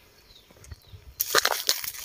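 Eucalyptus leaves rustling: quiet for about a second, then a crisp, crackling rustle of leaves that sets in suddenly and runs on.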